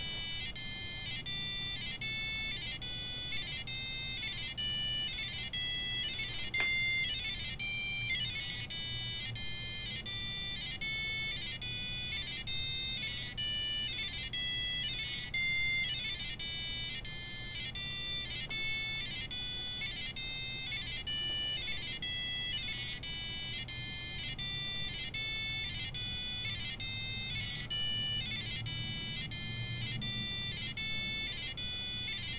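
Arduino-driven small speaker beeping high-pitched electronic tones, each lit LED sounding a note of the C major scale. The notes change in quick steps a few times a second as the LED pattern steps through cool-lex combinations.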